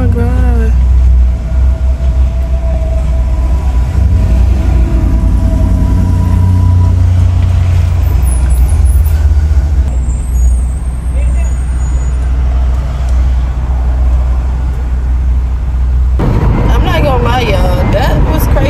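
Loud steady low rumble of a vehicle, with a brief raised voice at the very start. The rumble cuts off suddenly about 16 seconds in and a person's voice takes over.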